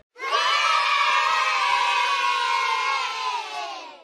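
A crowd of children cheering in one long held cheer, starting just after a brief silence and fading out near the end, heard as the sound effect of an outro card.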